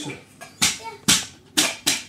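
A stick striking a cooking pan played as a drum: four sharp hits about half a second apart, the last two closer together, each with a short ring.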